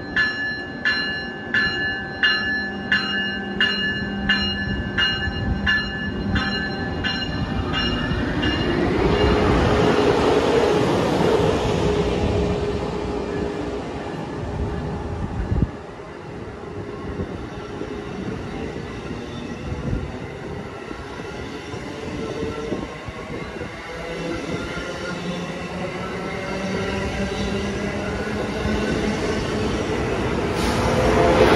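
First-generation Amtrak Acela Express trainset pulling out of a station. Its bell rings in steady strokes, about one and a half a second, for the first several seconds. Then the power car's drive rises in pitch as the train gathers speed and holds a steady whine that cuts off sharply about halfway through, while the coaches roll past with wheel and rail noise that grows louder toward the end.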